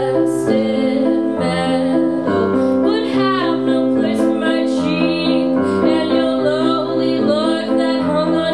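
A woman singing a slow song over held keyboard chords that change about once a second.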